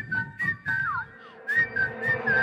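A whistled melody in a hip-hop track: short single-pitch notes with a couple of falling glides near the middle, over a few sparse beat clicks.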